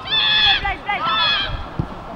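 Several people shouting in high, strained voices in short calls, with a few dull thuds in the second half.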